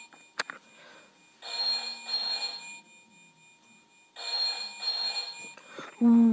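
Electronic Deal or No Deal 'Beat the Banker' game playing a ringing-telephone sound effect through its small speaker: two double rings, each lasting about a second and a half, the banker calling in with an offer.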